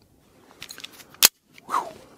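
A single sharp, short pistol shot from a Sig Sauer P320 about a second in.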